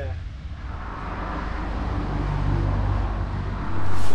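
A road vehicle approaching: a steady rumble and noise that grows louder over about three seconds.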